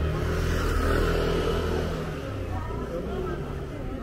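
A motor vehicle's engine passing close by on a narrow street, loudest in the first two seconds and then fading, over faint street chatter.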